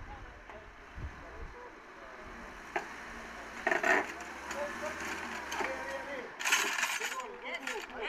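Hydraulic trolley jack being pumped to lift a car stuck in a hole, with metal clicks and knocks and a couple of short louder noises about halfway and near the end.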